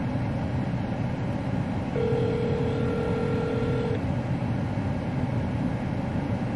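Telephone ringback tone heard through the phone: one steady ring of about two seconds, about two seconds in, as the call goes unanswered. Under it runs the steady low rumble of the car cabin.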